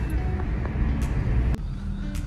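Car cabin noise while driving: a steady low engine and road rumble, with a brief laugh at the start. The sound changes abruptly about a second and a half in.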